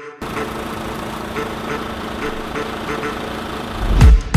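A vehicle engine idling steadily under a rushing noise. It cuts in suddenly just after the start and holds an even level throughout.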